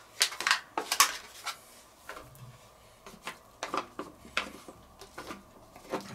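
Wooden spatula stirring diced bacon in a cast-iron Dutch oven, knocking and scraping against the pot in a quick run of clicks over the first second or so, then scattered taps. There is no frying sizzle because the pot is still heating up.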